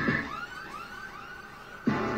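Background electronic music in a break: the beat drops out, leaving a quieter run of quick, repeated rising-and-falling siren-like synth swoops. The full beat comes back in abruptly near the end.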